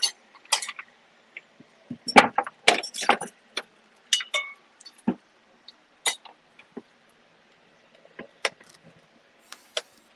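Irregular small clicks, taps and light metallic clinks from tools and parts being handled at a soldering bench: a soldering iron, wires and the helping-hands clips. They come thickest about two to three and a half seconds in, then as scattered single ticks.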